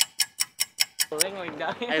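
Fast, even clock ticking, about five sharp ticks a second, stopping a little over a second in.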